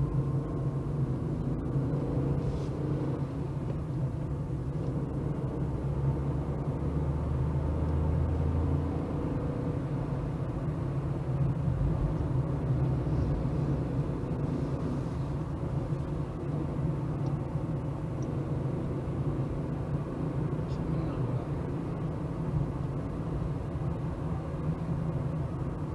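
A car running at low speed, heard from inside the cabin: a steady low engine hum with road noise. A deeper drone joins in for a few seconds about a quarter of the way in.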